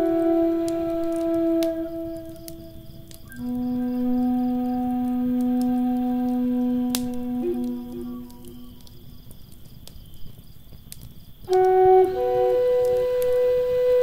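Native American flute playing slow, long held notes: a lower note held for about five seconds dies away, and a new phrase begins about twelve seconds in. A wood fire crackles faintly underneath, with a few sparse pops.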